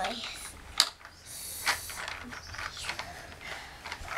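Hard plastic toy clicking and rattling as it is handled, with a sharp knock just before a second in.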